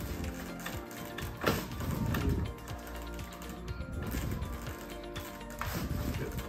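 Chiropractic ankle adjustment: a sharp joint pop about a second and a half in, and a second click near the end, over steady background music.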